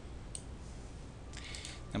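A single computer mouse click about a third of a second in, over a faint steady low hum of room tone.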